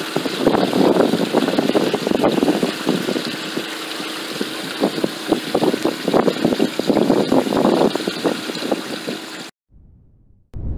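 Water gushing from a hose's metal end tube onto a slotted metal drain grate, splashing steadily. It cuts off abruptly near the end.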